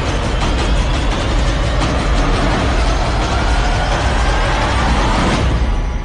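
Loud background music laid over a dense rumbling noise, with faint rising tones in the middle; it cuts off sharply near the end.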